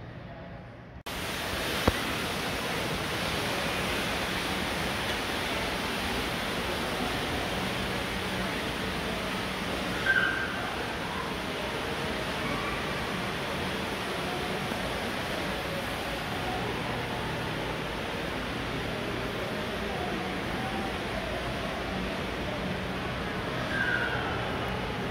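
Steady hiss of an indoor mall concourse's ambience, with a faint low hum and faint distant voices. It starts suddenly about a second in, with a sharp click soon after and a brief high chirp about ten seconds in.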